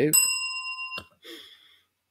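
A small bell struck once, ringing clear for about a second and then cut off with a click: a bell rung to greet a viewer checking in to the live stream.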